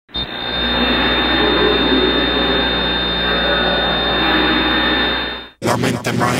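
A steady noisy drone with a thin, constant high whine and a low hum: a sound effect opening a reggaeton track. It cuts off suddenly about five and a half seconds in, and the track's beat starts.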